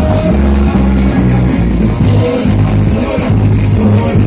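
A live band playing loud music through a stage sound system, with a strong bass guitar line and drums in front.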